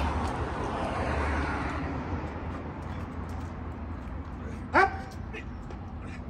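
Street noise from passing traffic that fades over the first couple of seconds, then one short, loud bark-like call about five seconds in.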